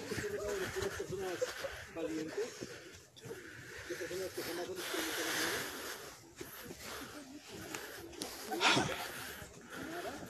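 Faint, indistinct voices of a group talking quietly, too low to make out words, with a soft hiss about halfway through and a brief louder sound near the end.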